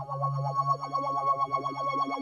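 John Bowen Solaris synthesizer playing a patch: a fast pulsing, rhythmic pattern of notes over a held low note, with steady high tones above.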